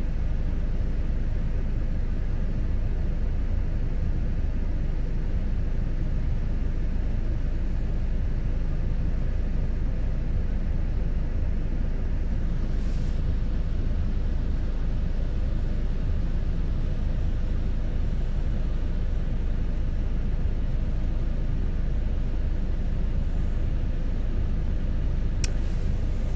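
Steady low rumble of a car heard from inside the cabin, unchanging throughout, with a faint click near the end.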